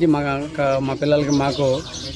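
A man speaking, with birds chirping faintly in the background.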